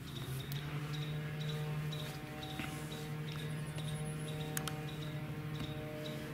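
A steady hum made of several held tones, unchanging throughout, with faint regular ticking high up and a brief high chirping about three and a half seconds in.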